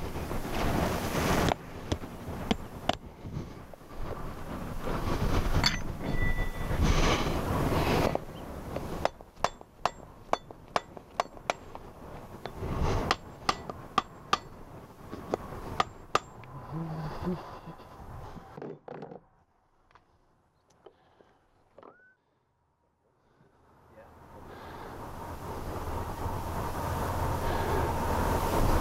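A farrier's hammer drives horseshoe nails through an aluminum shoe into a horse's hoof, in a quick run of sharp, ringing metal taps lasting several seconds around the middle, with shuffling and handling noise before it. The tapping stops, the sound drops away almost to nothing, and a steady background rises near the end.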